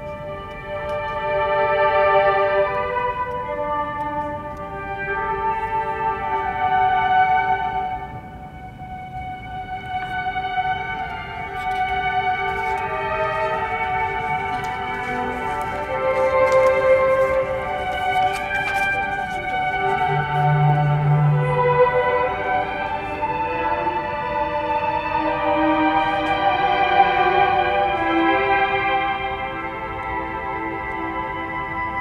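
Symphony orchestra playing a slow passage of sustained, overlapping string chords that swell and ebb, with no steady beat.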